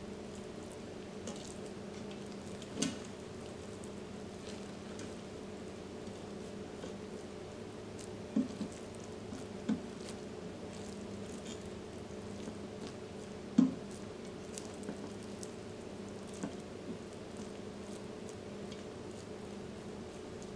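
Silicone spatula stirring and turning cooked rice and chicken in a stainless-steel Instant Pot inner pot: soft squishing scrapes with a few knocks of the spatula against the pot, the sharpest about 14 seconds in, over a steady low hum.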